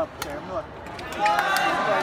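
Badminton jump smash: a sharp crack of racket strings on the shuttlecock right at the start, with a second short click a moment later. Voices rise and overlap from about a second in.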